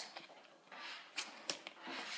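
Playing cards handled quietly in the fingers, with two soft clicks a little over a second in.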